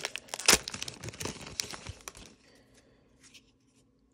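A foil NBA Hoops trading-card pack being torn open by hand, the wrapper crinkling and crackling with a few sharp snaps. The crinkling dies away a little after two seconds.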